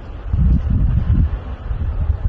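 Wind buffeting the microphone: an irregular, gusty low rumble that picks up about a third of a second in.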